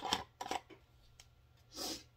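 A plastic screw lid being twisted onto a glass jar. The threads give off short clicks and scrapes at first, then a longer rasping scrape near the end.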